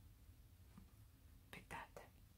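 Near silence: quiet room tone, with a brief faint whispered sound from the crocheter about one and a half seconds in.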